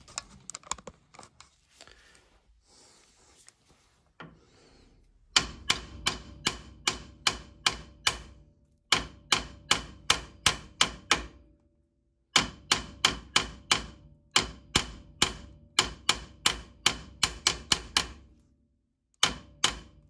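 Ball-pein hammer tapping on steel locking pliers clamped onto a seized brake caliper bleed nipple, to shock the stuck thread loose. The taps come in several runs of about three a second, each with a slight metallic ring, after a few seconds of quiet handling.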